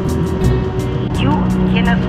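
A vehicle's engine running at high speed, rising in pitch several times, mixed with background music.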